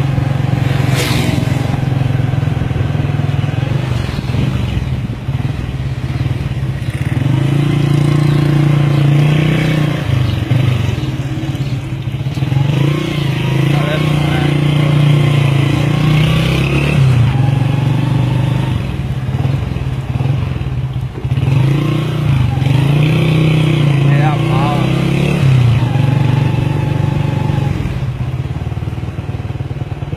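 A small motor scooter engine running steadily, its pitch dipping and returning several times, with people talking over it.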